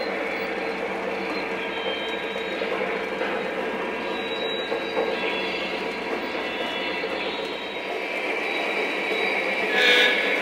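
Lionel O-gauge model freight train running on the layout's track: a steady rolling rumble and hum that grows a little louder near the end.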